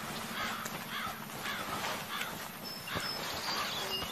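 Crows cawing repeatedly, about two calls a second, over a steady outdoor background.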